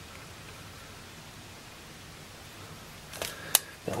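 Low, even room hiss for about three seconds, then near the end a short rustle and a single sharp click.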